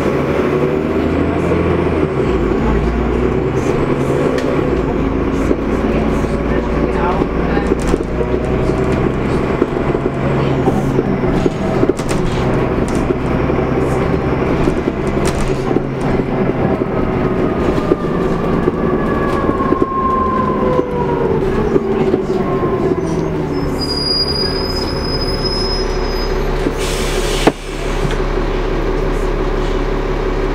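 Inside a Transbus Trident double-decker bus on the move: the diesel engine and driveline run steadily, with a whine that rises and falls in pitch as the bus speeds up and slows. Loose fittings in the body rattle throughout, and a short hiss comes near the end.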